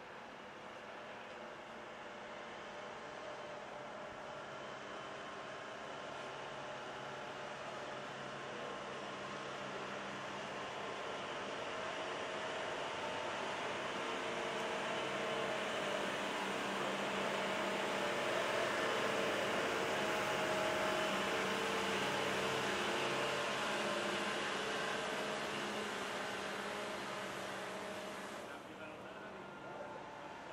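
A motor vehicle's engine running steadily. It grows louder toward the middle and fades near the end, like a vehicle passing.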